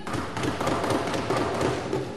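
Many members thumping their wooden desks at once, a dense steady patter of thuds: the chamber's way of showing approval of a speaker's point.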